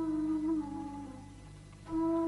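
A slow, wordless hummed melody of long held notes with a slight waver. It fades away about halfway through and a new note comes in just before the end, over a low steady hum.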